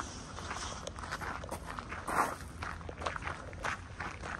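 Footsteps crunching on a gravel path at a steady walking pace, about two steps a second, with the loudest step about two seconds in.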